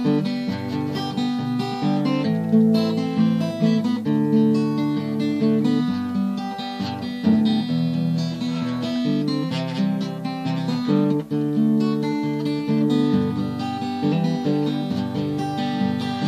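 Steel-string acoustic guitar played alone as an instrumental break, strummed and picked chords.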